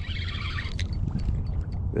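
A fishing reel buzzing for about the first second as a freshly hooked fish is played, over a steady low rumble of wind on the microphone.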